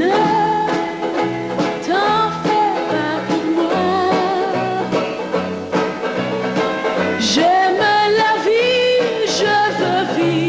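A woman singing a slow pop ballad with held, gliding notes over instrumental accompaniment.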